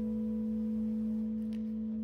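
A single electric guitar note held with long sustain: one steady, nearly pure tone that does not fade.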